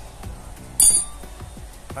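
A single short, bright metallic clink about a second in, as the loosened sprocket bolts and tools are handled while the old rear sprocket comes off the wheel hub.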